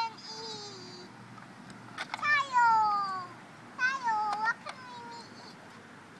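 A young child's high-pitched wordless vocal sounds during play: two long squealing calls, the first sliding down in pitch about two seconds in, the second dipping and rising again a little later.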